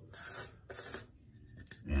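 Lid of a metal shaving-soap tin being worked off: two short scraping rubs, then a light click near the end.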